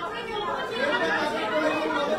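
Indistinct overlapping voices: several people talking at once in a room, with no single clear speaker.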